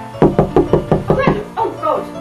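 A quick run of about seven knocks from a fist rapping, about six a second, followed by a man's short vocal sound that slides up and down in pitch. Light background music plays under it.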